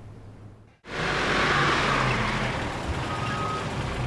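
An old four-wheel-drive jeep's engine running as it pulls up, cutting in suddenly about a second in.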